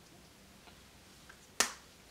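Quiet room tone, broken about a second and a half in by a single short, sharp click.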